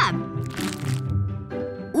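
Background music with a short crisp crunch about half a second in, from a sandwich of bread, Nutella and a chocolate bar.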